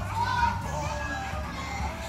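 Children playing and calling out, their voices high and indistinct, over background music.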